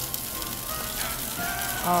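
Raw prawns and garlic sizzling in hot olive oil in a stainless steel frying pan, a steady crackle, under soft background music.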